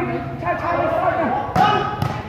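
A volleyball struck hard by a player's hand, one sharp slap about one and a half seconds in, over spectators' voices chattering in the hall.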